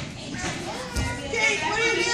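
Young children's voices and chatter in a busy gym, with a child's high voice speaking in the second half and a soft knock about a second in.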